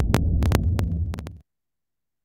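Tail of a promo clip's soundtrack: a loud low hum with scattered sharp clicks, cutting off abruptly about one and a half seconds in.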